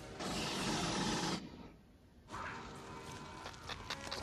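Faint film soundtrack: a rushing blast of fire lasting about a second, a short gap, then faint score music with a few metallic clanks.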